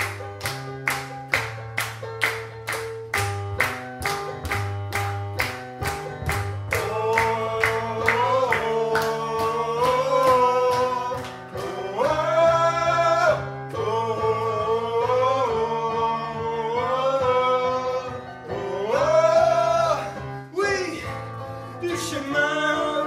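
Live song performance. An accompaniment with a steady beat of sharp strokes about three a second comes first, then from about seven seconds in a voice sings long held notes that bend up and down over it.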